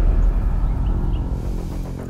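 A low rumble left from a dramatic sound-effect hit, fading, with a soft, steady music tone coming in about halfway through.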